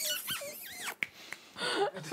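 A person's high-pitched squealing voice, sliding up and down in pitch for about a second, then a short shriek near the end.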